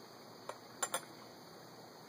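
Three light clinks of a whiskey glass being handled: one about half a second in, then two close together just before a second in.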